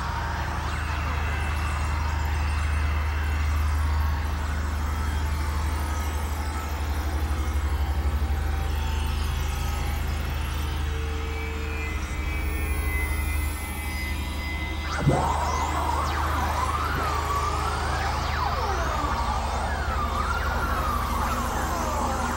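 Experimental synthesizer drone music from a Novation Supernova II and a microKorg XL: a steady deep bass drone under wavering, siren-like tones. About fifteen seconds in, a tone sweeps sharply upward and then warbles up and down.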